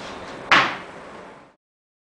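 A single sharp knock about half a second in, ringing out briefly in the room, after which the sound cuts off abruptly.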